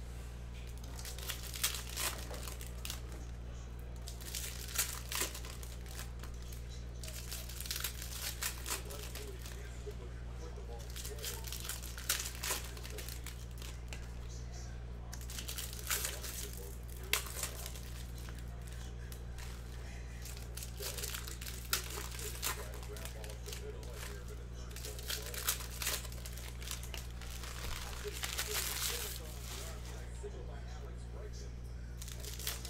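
Foil baseball card pack wrappers being torn open and crinkled by hand, in repeated bursts of crackling every few seconds, over a steady low hum.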